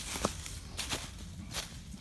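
Footsteps crunching and scuffing through dry fallen leaves on a rocky slope, in an irregular run of short steps.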